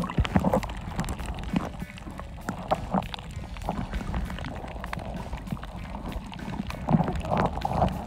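Muffled underwater audio from a camera held under the sea while snorkeling: a low, steady water rumble with irregular clicks and knocks.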